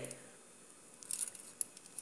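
Faint crinkling of the aluminium foil wrapping a slice of cake, with a few light clicks of a metal fork, starting about a second in.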